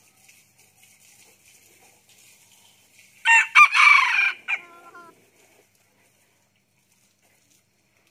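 Red junglefowl rooster, a second-generation captive-bred bird, crowing once about three seconds in. The crow is short, lasts just over a second and ends abruptly.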